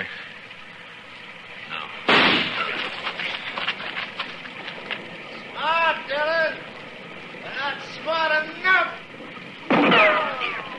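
Radio-drama sound effects of a gunfight in the rain: a single gunshot about two seconds in, dying away with an echo, over a steady rain hiss. Short voice-like cries come in the middle, and near the end a second shot sounds, followed by a ricochet whine falling in pitch.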